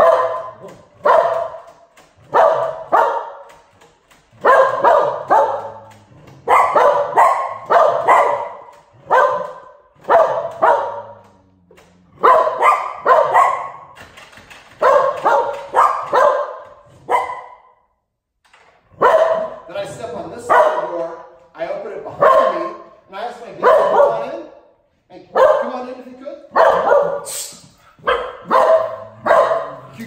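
Cocker Spaniels barking loudly in long runs of several barks a second, with short breaks about 18 and 25 seconds in: alarm barking at the front door as it is answered.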